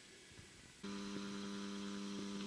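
Faint room noise, then a steady, low electrical hum that starts abruptly a little under a second in.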